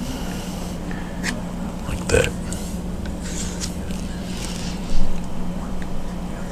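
A palette knife dabbing paint onto a canvas panel: faint scrapes over a steady low hum, with one thump about five seconds in.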